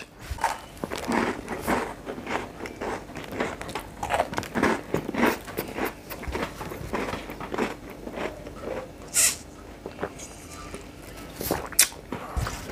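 Close-up chewing of a cake rusk, a soft, dry toasted snack: a run of irregular soft crunches and mouth sounds, with a couple of sharper crackles in the last few seconds.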